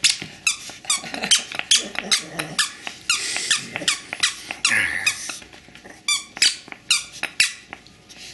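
A plush toy's squeaker squeaking over and over as a Chihuahua bites and tugs at the toy: short, high squeaks a few times a second, crowding together in bursts a few seconds in.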